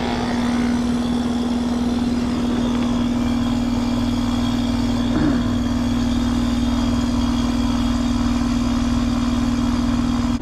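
Rheem heat pump outdoor unit running in heating mode: the compressor gives a steady hum under the condenser fan's rushing air. The system is likely overcharged.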